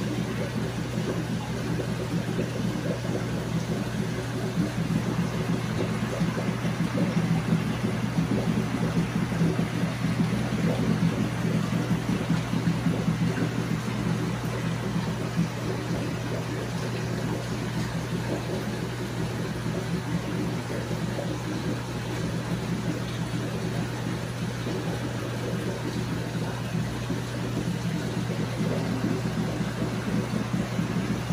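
A steady low machine hum under an even hiss, running unchanged.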